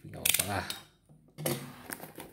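Clear packing tape being picked at and pulled off the seam of a cardboard box: a quick, fast-repeating crackle near the start and a rougher tearing rub about one and a half seconds in.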